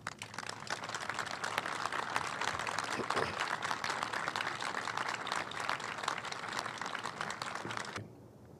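Audience applause, many hands clapping together, building up over the first second.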